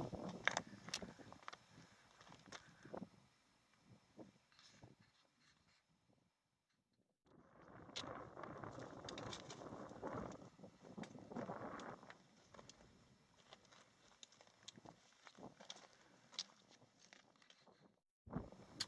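Faint footsteps on loose rock: scattered scuffs and small clicks of stones underfoot, with a near-silent stretch from about four to seven seconds in.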